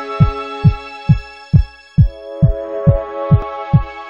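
Intro music: a deep kick drum beating steadily about twice a second under sustained synth chords, with the chord changing about halfway through.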